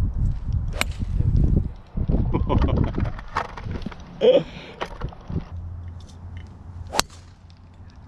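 Golf clubs striking balls off the tee: a sharp crack about a second in and a second, louder crack near the end, as two players hit their tee shots. Low wind rumble on the microphone lies between them.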